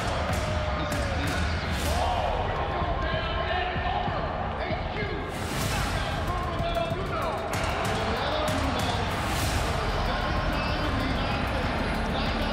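Arena ambience: a thumping, bass-heavy beat from the venue's sound system over the noise of a large crowd, with indistinct voices and several sharp hits.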